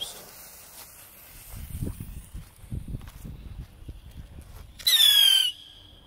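Small whistling bottle rocket: its lit fuse fizzes faintly at first, then about five seconds in comes a loud, short whistle that falls slightly in pitch as the rocket launches.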